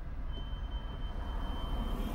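Low, steady rumble of a car's engine and road noise heard from inside the cabin while it creeps along in queued traffic. A thin, steady high whine comes in about a third of a second in and holds.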